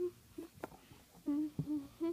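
A child humming a string of short "hmm" notes, five or so in two seconds, the longest pair a little after the middle, with a couple of light handling clicks in between.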